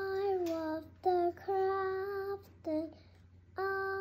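A child singing a wordless tune in a string of notes, several held for about a second, with short breaks between them.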